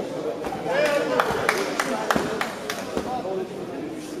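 Voices talking in a large, echoing sports hall, with a few sharp knocks in the middle.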